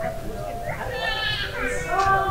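Passers-by talking nearby, with a wavering, bleat-like call about a second in.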